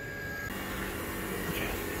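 Steady mechanical hum of a home-built heat-pump water heater's compressor and blower running. It sets in about half a second in, with faint steady tones under an even hiss.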